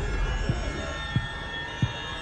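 A low steady rumble, with three faint short taps spread across it as a hand reaches into a backpack.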